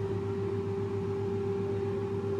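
Air fryer running while it cooks: its fan motor gives a steady hum with one steady whine-like tone above it.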